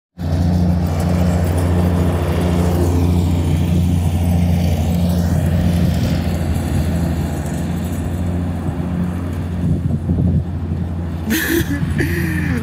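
A small engine running steadily at an even speed, a constant low drone close by.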